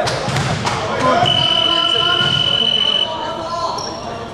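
Basketball knocks and thuds on an indoor court with players calling out, then a loud, steady high-pitched signal tone held for about two seconds, like a game buzzer or long whistle blast.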